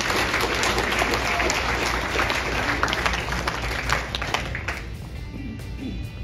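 An audience applauding, a dense patter of many hands clapping, which dies away after about five seconds.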